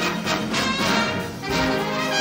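Jazz big band playing a bebop tune: full trumpet, trombone and saxophone sections over piano, upright bass and drums.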